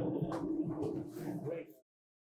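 A man's soft laughter, with faint voice sounds in the room, fading and then cutting off suddenly near the end.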